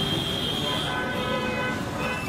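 Busy street ambience: steady road-traffic noise with background voices and a few short high horn toots.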